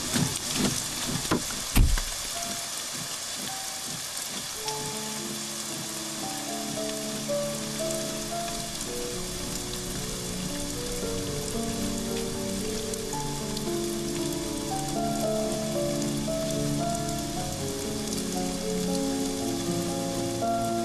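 Heavy rain falling steadily, with a few knocks in the first two seconds, the loudest about two seconds in. From about five seconds in, soft background music with slow held notes plays over the rain.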